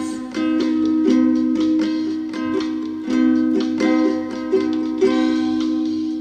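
Ukulele strummed in the closing bars of a song, over a steady held low note. It begins to fade out near the end.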